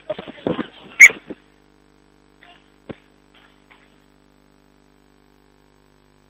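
Referee's body microphone picking up short breaths and rustles in the first second and a half, with one brief, sharp, high squeak about a second in. After that, only a faint steady hum from the radio link.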